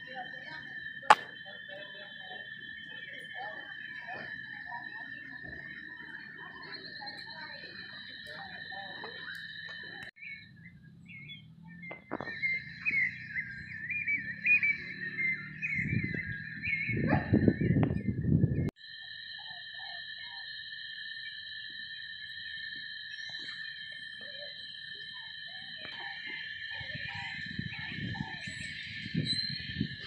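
Steady, high-pitched drone of insects calling at several pitches at once, broken off by cuts about a third and two-thirds of the way through. A sharp click comes about a second in, and a loud rumble of handling noise sits just before the second cut.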